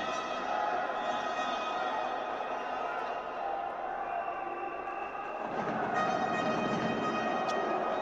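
Steady arena din with several held tones running through it, and no commentary. It grows a little fuller and louder about five and a half seconds in.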